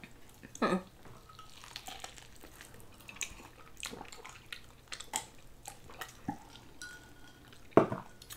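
Quiet eating-show table sounds: scattered small clicks and taps as food and a drinking glass are handled, with sips of water, and a sharper click near the end.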